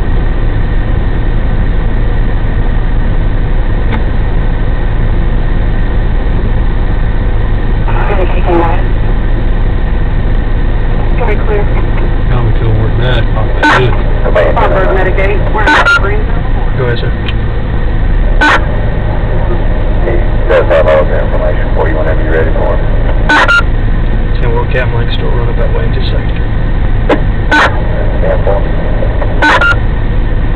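Steady low drone of an idling vehicle engine, with faint voices and several sharp clicks heard over it.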